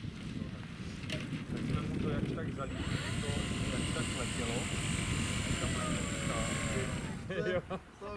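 Electric motor and propeller of a quarter-scale RC Piper J-3 Cub tow plane at full power for its takeoff roll on grass: a steady high whine comes in about three seconds in and stops abruptly shortly before the end, over a low wind rumble on the microphone.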